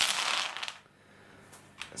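A big handful of six-sided dice thrown onto a gaming mat, clattering and rattling together for under a second, then settling. A few light clicks near the end.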